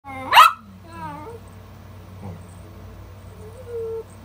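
Small dog giving one sharp, high yap about half a second in, followed by quieter falling whines and a held whine near the end, in rough play.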